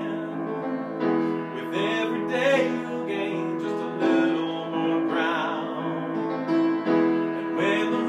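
A man singing a slow pop ballad while accompanying himself on piano: the piano holds steady sustained chords, and the voice comes in over them in a few wavering phrases.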